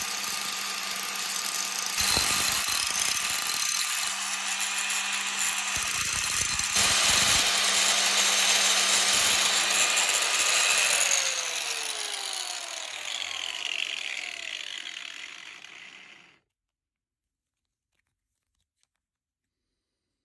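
Electric angle grinder running with its disc grinding an aluminium rod, the noise swelling louder when the metal is pressed to the disc. Near the end the grinder is switched off and winds down with a falling whine, then the sound cuts off suddenly.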